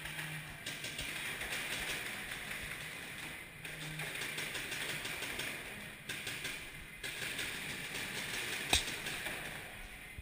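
Paintball markers firing rapid strings of shots, a dense run of clicking pops that echoes through a large indoor hall, with one sharp, louder crack near the end.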